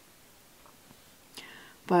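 Near silence with room tone, then a faint intake of breath about one and a half seconds in, just before a woman's voice starts at the very end.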